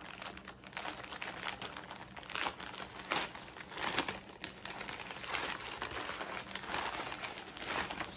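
A shirt order's packaging being opened by hand: a steady run of crinkling and rustling, with louder crackles about once a second.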